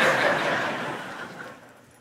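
A congregation laughing together, a crowd of voices at its loudest at first and fading away over about two seconds.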